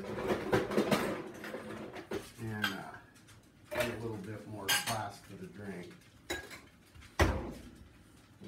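Ice cubes clinking as they are put into a metal cocktail shaker tin, with a rattle of clinks in the first couple of seconds and scattered clinks after. A single sharp knock comes near the end.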